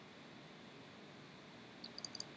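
Near silence: faint room tone, with a few quick small clicks near the end from a computer mouse button.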